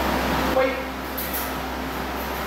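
Steady room noise with a low hum, and a brief faint tone about half a second in.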